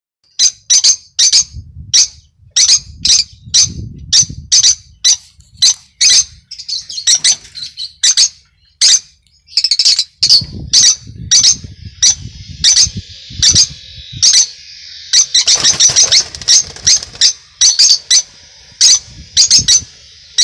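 Peach-faced lovebirds giving sharp, shrill chirping calls over and over, two or three a second, with a denser burst of overlapping calls about three-quarters of the way through.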